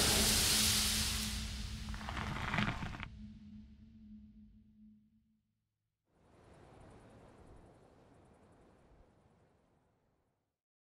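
Sound-designed whoosh of rushing air as the Tesla Model S sweeps past, over a steady low hum. It fades from about a second in and cuts off sharply near three seconds, and the hum dies away soon after. Near silence follows, with only a very faint hiss in the middle.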